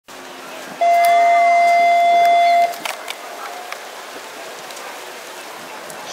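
A single steady electronic tone held for about two seconds, starting just under a second in and cutting off suddenly: the show-jumping start signal telling the rider to begin the round. Faint arena background noise follows.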